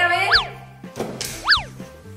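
Two cartoon 'boing' sound effects, each a quick sweep up in pitch and back down, about a second apart, over light background music.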